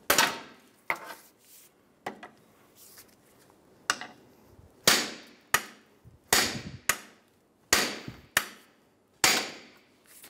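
A hammer strikes a steel pry bar wedged under the inner CV joint cup of a 2007 Toyota Camry's front right CV axle, to drive the axle out of the transmission. There are about eleven sharp metal strikes at an uneven pace, each ringing briefly. The axle is stuck in its intermediate bearing bracket, which this axle often sticks in.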